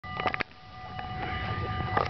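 Level-crossing warning bell ringing steadily over a low rumble that grows louder. A few sharp knocks near the start and one at the end.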